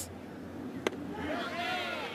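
A single sharp pop about a second in, typical of a pitched baseball smacking into the catcher's leather mitt, over stadium crowd noise with voices calling out just after.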